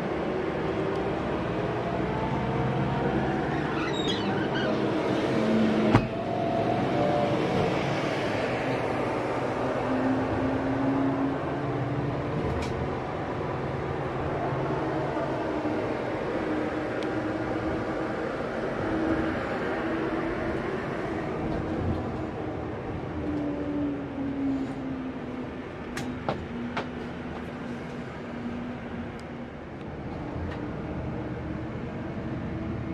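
Running noise of a Scania K410IB double-decker coach heard inside its cabin on the move, a steady drone with an engine note that slowly rises and falls. A sharp knock about six seconds in and a few light clicks near the end.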